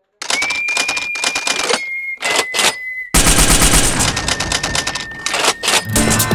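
An edited-in sound effect of rapid, sharp clattering clicks with a high steady tone held above them. It starts abruptly out of dead silence and turns denser and louder about three seconds in, leading into outro music.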